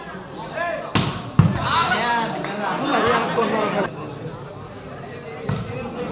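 Volleyball being struck by hand: a sharp slap about a second in, a louder thud just after, and another hit near the end, over a crowd of spectators shouting and talking.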